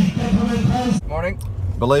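Street crowd chatter with bending voices for about the first second, then a sudden cut to a car cabin. There a steady low engine hum runs under a man's voice.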